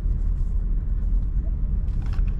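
Steady low rumble inside the cabin of a Suzuki S-Presso: its small three-cylinder engine running and its tyres on the road as the car is driven slowly through a turn.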